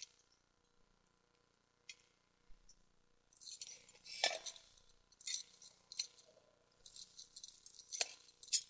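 Faint rustling and small clinking and jangling sounds, irregular, starting about three seconds in after near silence.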